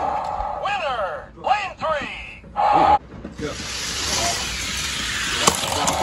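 Die-cast Hot Wheels cars rolling down an orange plastic drag-strip track: a rushing wheel noise builds over the last few seconds and ends in a click as they reach the electronic finish-line gate. It is preceded by a short steady beep and some voice-like sounds.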